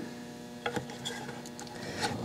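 Quiet room tone with a couple of faint taps about two-thirds of a second in, as a glued wooden trim strip is set against the corner of the lamp body.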